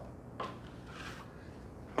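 Faint scraping of a plastering trowel spreading wet plaster onto a plasterboard wall while laying on a second coat. There is a short scrape about half a second in, then a softer swish.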